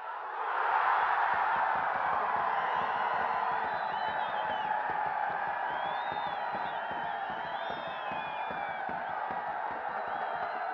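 Stadium crowd cheering a goal. The cheering swells sharply about half a second in and stays loud, easing a little toward the end.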